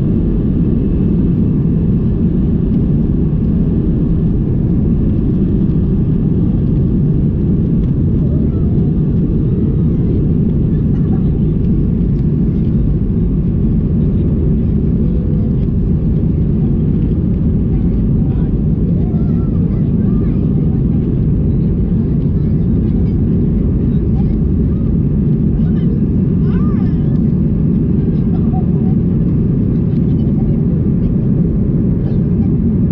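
Jet engines and airflow of an Airbus A319 heard from inside the cabin during takeoff and initial climb: a loud, steady, deep noise that does not let up.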